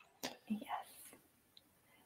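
Quiet speech: a soft, brief "yes" about half a second in, then near silence.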